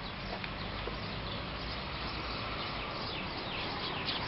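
Outdoor ambience: a steady background hiss with faint bird chirps, short falling notes that come more often in the second half.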